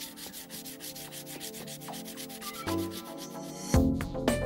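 A firm SAA soft pastel stick scratching across paper in quick, evenly repeated back-and-forth strokes as it lays down a patch of colour. Louder music starts just before the end.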